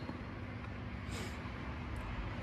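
Steady low rumble of distant road traffic, with a brief high hiss a little past one second.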